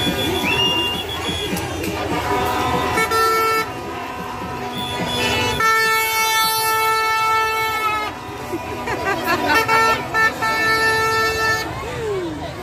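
Horns honking over a large crowd's voices: a short blast about three seconds in, a long blast lasting over two seconds in the middle, and another near the end.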